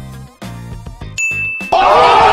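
Background music, then a bright electronic ding about a second in that holds steady for about half a second, followed near the end by a much louder sound effect that starts suddenly.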